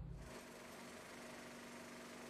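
Very faint steady hum and hiss, after a low drone fades out at the very start.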